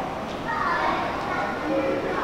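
High-pitched voices of children calling out and playing, with no clear words, over a low rumble.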